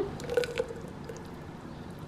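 A splash of cream poured into a blender jar onto melted chocolate nut butter, with a few small drips and splashes in the first half second, then faint room tone.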